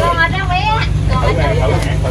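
People talking in short stretches over a steady low rumble.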